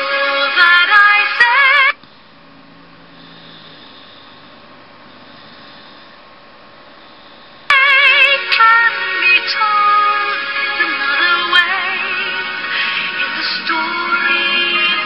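A woman singing a slow show tune with wide vibrato over piano accompaniment, played from a screen and picked up again by a microphone. The singing breaks off about two seconds in, leaving a quiet pause of some six seconds, then comes back in.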